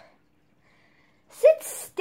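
Quiet room for about a second, then near the end a girl's sudden short breathy vocal outburst: a brief 'ah' running into a hiss.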